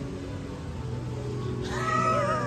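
Steady low background hum of the hall, with a drawn-out high-pitched voice near the end whose pitch wavers up and down.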